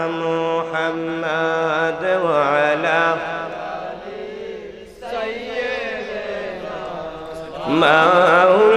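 Men's voices chanting an Islamic devotional hymn in long, wavering held notes, a lead voice amplified through a microphone with a group singing along. It dips quieter about four to five seconds in and swells loud again just before the end.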